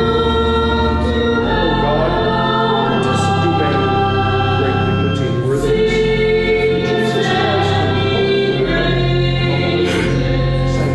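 Voices singing a hymn at the offertory of Mass, over sustained low accompanying notes, with the chords changing every second or two.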